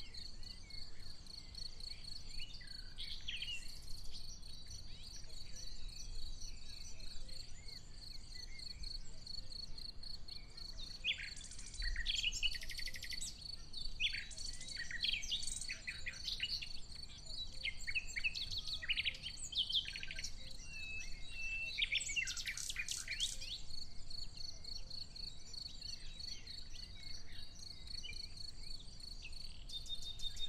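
Wild birds singing in short, varied phrases, busiest in the middle, over a steady, high-pitched insect trill like a cricket's.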